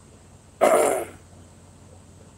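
A man's single short, harsh throat noise, like a cough or throat-clearing, about half a second long, starting a little after half a second in.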